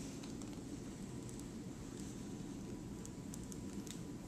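Quiet steady low hum of a lab room, with a few faint ticks.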